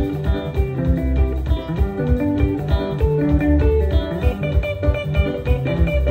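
Live band playing a guitar-led instrumental passage: a guitar picks a quick run of notes over bass guitar and a drum kit keeping a steady beat.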